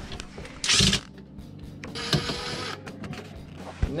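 Ryobi cordless driver running in two short spells, a very loud one about half a second in and a longer one about two seconds in, backing out the screw that holds the dishwasher's mounting bracket to the countertop.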